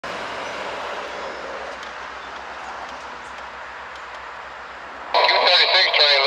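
Steady rumble of a freight train, diesel locomotives hauling empty coal cars. About five seconds in, a scanner radio transmission cuts in much louder with a voice.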